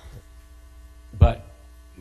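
Steady electrical mains hum on the microphone and sound system during a pause in speech, with one brief voice sound a little over a second in.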